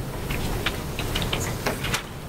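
Sheets of paper being handled and shuffled at a meeting table, small rustles and clicks scattered through, over a steady low room hum.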